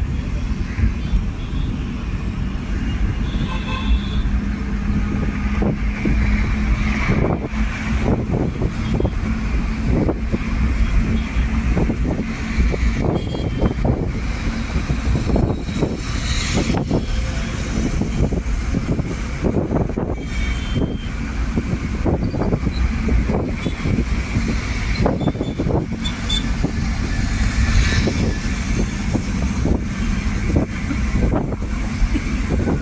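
Ride noise from inside a moving road vehicle: a steady low rumble of engine and road, with irregular gusts of wind buffeting the microphone.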